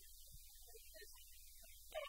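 Near silence: a low steady hum, with faint scattered notes of quiet background music.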